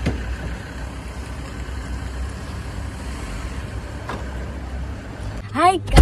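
Steady low rumble of a vehicle engine running nearby, with a sharp click at the start. It cuts off about five seconds in and a woman's voice follows.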